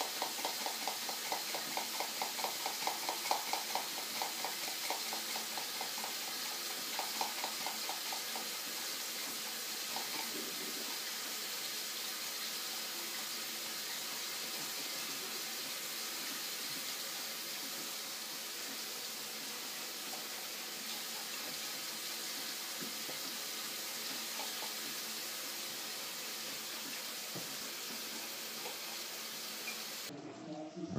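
A utensil worked up and down in a mug held in the hand, a quick rhythmic run of strokes that fades out after about eight seconds, over a steady hiss.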